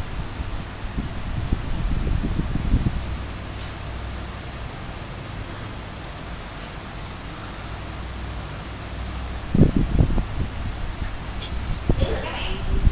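Steady low background hum from a handheld recording, with a few low, dull thumps of the microphone being handled, about one to three seconds in and again near the end.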